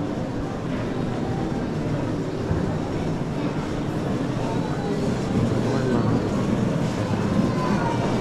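Busy airport terminal ambience: many travellers talking indistinctly at once, with footsteps and the rumble of wheeled suitcases rolling across the hard floor.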